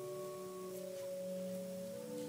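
Soft organ music: sustained chords held steady, moving to new chords about two-thirds of a second in and again near the end.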